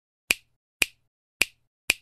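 Four sharp snap-like clicks, about half a second apart, from an intro title sound effect.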